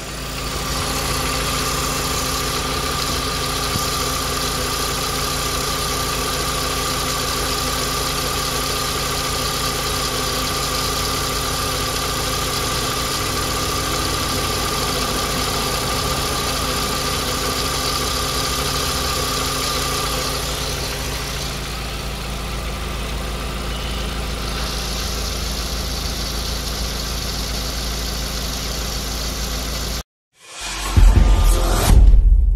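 Volkswagen Beetle engine idling steadily, heard up close in the open engine bay by the alternator and belt. A thin steady whine sits over it and fades out about twenty seconds in.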